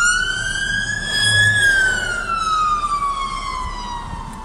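Emergency vehicle siren wailing, heard from inside a car: a single tone rising over about a second and a half, then falling slowly.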